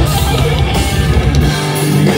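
Live heavy metal band playing loud, with distorted electric guitars and drum kit. About a second and a half in, the heavy low end drops away and the guitars carry on alone.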